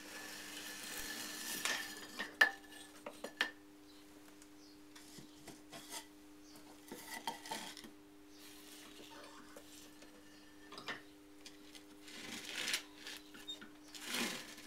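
A cutting wire scraping through clay as it is drawn under a freshly thrown vase on a potter's wheel, followed by a few sharp clinks of tools being handled, and another scrape near the end, over a steady low hum.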